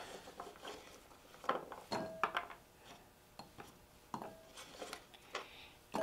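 Scattered light knocks and clinks as a kitchen knife and chopped carrot pieces are moved across a wooden cutting board and into a glass bowl, with a few of the strikes ringing briefly.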